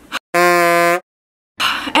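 An edited-in buzzer sound effect: one harsh, steady-pitched buzz lasting about two-thirds of a second, cut off suddenly, with dead silence on either side of it.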